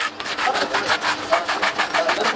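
Rapid back-and-forth rubbing of a hand along a cricket bat's twine-wrapped handle, a quick scratchy rasp of several strokes a second.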